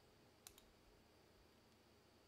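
Near silence with a single faint computer mouse click about half a second in.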